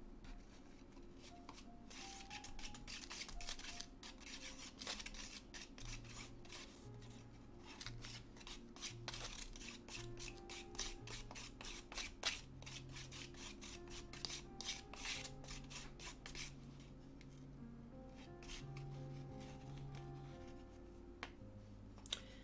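Plastic spoon stirring yellow acrylic ink into thick white primer in a small wooden dish: quiet, irregular scraping and tapping against the dish.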